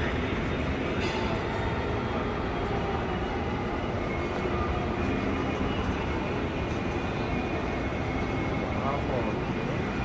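Steady background noise of a busy indoor shopping mall: a constant low rumble with indistinct distant voices, and no sudden sounds.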